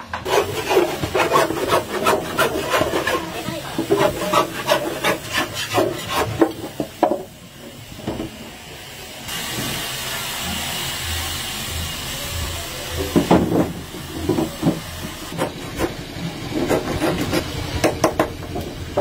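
Hand work on wooden acoustic guitar bodies: a run of quick wooden knocks and scraping for the first several seconds. A steady hiss for a few seconds in the middle, then more knocking and scraping of wood.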